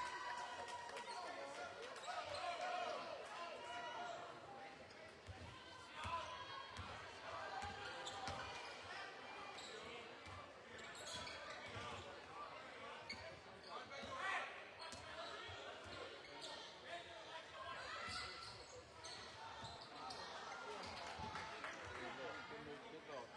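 A basketball bouncing on a hardwood gym court, with repeated short knocks, under the voices of spectators talking in the stands.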